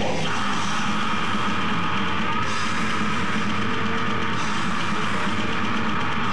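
Death metal band playing live: distorted guitars and drums at a steady loud level, with the vocalist growling into the microphone.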